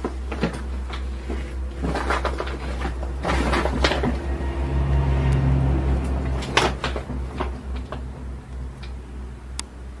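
Irregular knocks, clicks and clatter of someone moving about a small, bare room and handling things, over a steady low hum.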